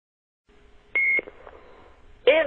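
A telephone line opens with faint hiss and a low hum, then one short high-pitched beep sounds about a second in.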